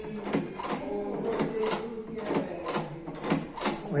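Lever door handle being pressed and released over and over, its latch mechanism clicking about three times a second as the lever springs back. The handle is returning freely now that its spindle is centred and aligned.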